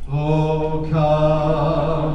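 A man singing a Christmas carol into a microphone in long held notes, moving to a slightly higher note about halfway through.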